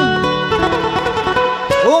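Live band music: guitars playing a plucked melody between the singer's lines, with his voice coming back in near the end.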